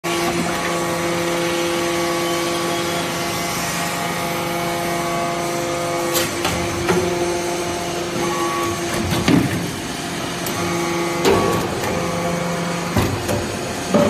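Hydraulic briquetting press running as it compacts metal chips into round pucks: a steady hum from its hydraulic drive, which breaks and changes from about six seconds in, with several sharp metallic knocks as the ram works.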